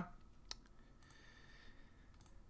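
A single faint computer mouse click about half a second in, otherwise near silence.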